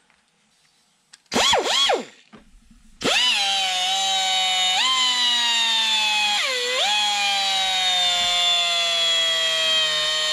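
Pneumatic die grinder with a carbide burr. It is blipped briefly twice about a second in, then from about three seconds in it runs in a steady high whine while cutting into the aluminium combustion chamber of a Subaru EJ20 cylinder head. The pitch dips twice as the burr bites and sags slowly under the load.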